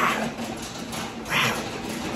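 A man's breathy, wordless vocal sounds: two short bursts about a second and a half apart.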